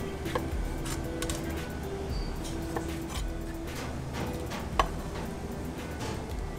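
A chef's knife cutting a tomato on a wooden chopping board, a few short taps of the blade on the board, under steady background music.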